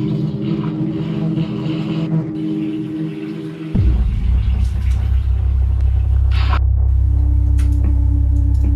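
Dark, ominous soundtrack drone: a few held low tones, then about four seconds in a deep rumbling drone comes in suddenly and holds to build tension, with a brief higher swish a little later.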